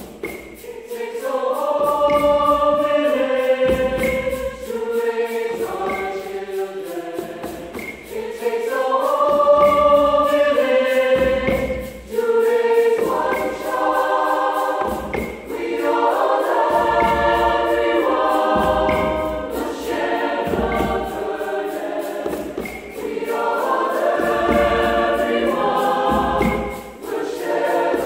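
Mixed choir singing in chords, changing every second or two, with hand drums playing low strokes beneath at about one to two second intervals.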